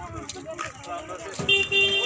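A vehicle horn sounds one steady, held beep starting about one and a half seconds in, over faint voices of people on the road.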